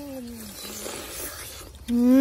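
A boy humming a closed-mouth "mmm" of relish while eating, the hum falling in pitch and fading about half a second in. After a quieter stretch, a louder, steady "mmm" begins near the end.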